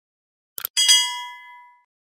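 Two quick mouse-click sound effects, then a single bell ding that rings out and fades over about a second: the sound effect of a subscribe button being clicked and its notification bell ringing.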